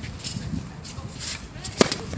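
A tennis racket striking the ball on a serve: one sharp pop near the end.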